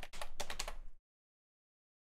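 Computer keyboard keys clicking in quick succession, then the sound cuts off to dead silence about a second in.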